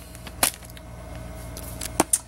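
Handling noise: a sharp click about half a second in, a few faint ticks, and another click near the end, over a steady low hum.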